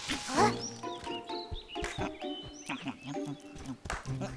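Cartoon dinosaur calls, short chirps and cries, over background music, with a loud rising cry about half a second in.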